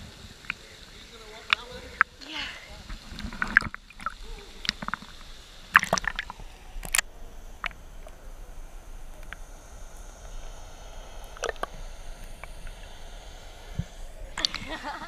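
Water sloshing and splashing around a camera held at the surface of a swimming hole, then the camera goes under a little before four seconds in and the sound turns muffled, with sharp clicks and pops at irregular moments.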